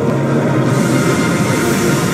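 The soundtracks of several videos playing over each other at once: music and sound effects mixed into a dense, noisy jumble that thickens with added hiss about two-thirds of a second in.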